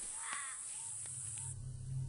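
A bird gives a harsh cawing call, followed by a few shorter, fainter calls. About one and a half seconds in, the sound changes abruptly to a steady low hum.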